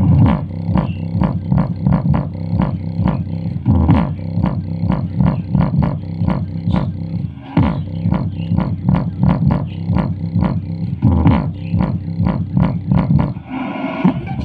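Bass-heavy music played loud through a portable speaker, with a fast, even beat of about three hits a second over deep bass, the speaker's passive bass radiator pumping.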